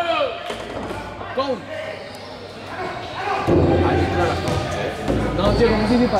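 Sports hall sounds during a basketball game: scattered voices and a few knocks of a basketball bouncing on the hardwood court. A low rumble comes in about halfway through.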